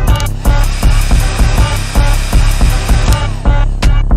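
UK drill instrumental beat: heavy 808 bass and a drum pattern. A layer of hissing noise sits over the beat from just after the start and fades out a little past three seconds.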